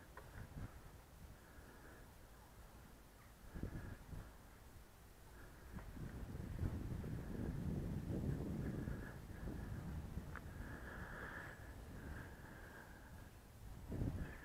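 Gusty wind buffeting the microphone, a low rumble that swells for a few seconds in the middle, with a faint high-pitched sound coming and going.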